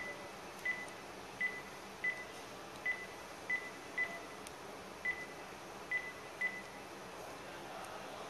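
Panasonic cordless phone handset's keypad beeping as a number is dialled: about ten short, high beeps at uneven intervals, which stop about six and a half seconds in.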